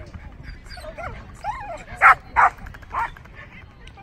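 A dog giving a few short rising-and-falling yips, then three sharp barks about two to three seconds in, the second and third closely spaced and the last a moment later.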